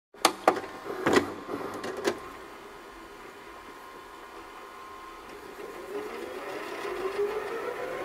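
Reverb-drenched intro of an electronic R&B song: a few sharp clicks with long echoing tails in the first two seconds, then a soft sustained tone with a slowly rising pitch line leading toward the vocals.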